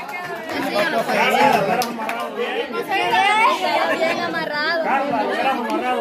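Several people talking over one another at once: a small group's chatter.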